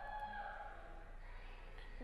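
A boy's drawn-out, breathy hesitation sound ('uhh') as he tries to remember, fading out about a second and a half in, over a steady low electrical hum.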